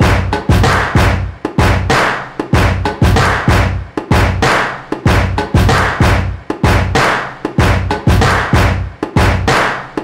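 Loud music with a heavy, steady drum beat of about two hits a second, stopping suddenly at the end.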